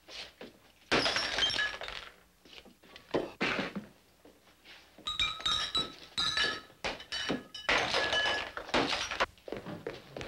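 Glasses and bottles being handled in a hurry, clinking and knocking against each other and a wooden bar top in several clattering bursts, some with brief glassy ringing.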